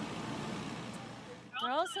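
Steady background rushing noise with no clear events, then a man starts speaking near the end.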